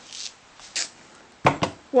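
Playing cards being picked up and handled: faint rustling, then two quick sharp taps about one and a half seconds in.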